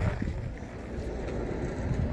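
Wind buffeting the microphone outdoors, a low uneven rumble with no distinct events.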